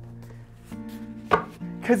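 A strummed, guitar-like chord ringing and fading out, then a few sharp knocks, the loudest about a second and a half in.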